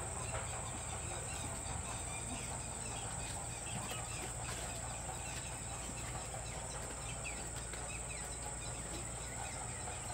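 Steady outdoor ambience of insects keeping up a constant high-pitched drone, with a few faint bird chirps scattered through.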